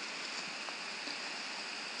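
Steady faint hiss of the recording's background noise, with no distinct sound events.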